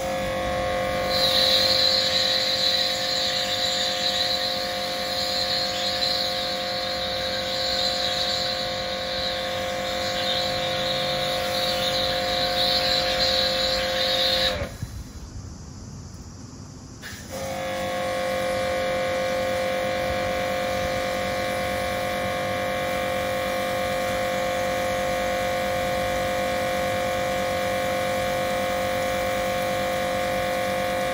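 Kärcher K7 pressure washer running with a steady whine while the foam cannon sprays with a loud hiss. About halfway through the trigger is released: the motor and spray stop for about three seconds, then the motor starts again and runs steadily with a softer spray.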